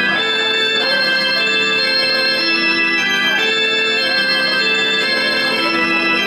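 Electric organ playing alone, a short repeating melodic figure of held notes over sustained chords, with no drums or other instruments yet.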